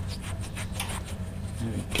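Fingers rubbing a coin in a paste of bicarbonate of soda: a soft, gritty scrubbing in many short repeated strokes, the coin being cleaned of tarnish.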